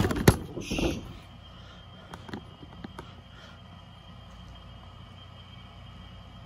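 Cardboard toy box and its plastic packaging being handled: several sharp knocks and a brief rustle in the first second, then a few faint clicks over quiet room noise.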